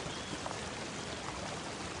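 Steady rushing of river water.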